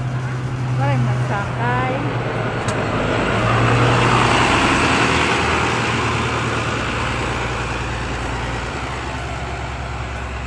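A bus engine running as the bus drives close past and pulls away up the road: a steady low hum with tyre and road noise that grows louder around the middle and then slowly fades.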